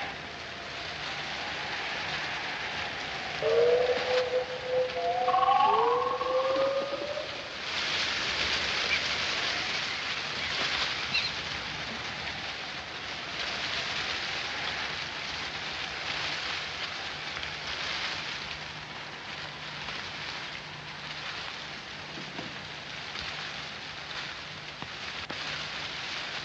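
Steady rain, an even hiss throughout. A few seconds in, a few short sliding tones, a cry or call, rise over it and are the loudest part.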